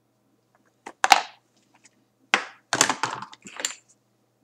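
Objects being handled and set down close to the microphone: a sharp knock about a second in, then a run of clatters and scrapes.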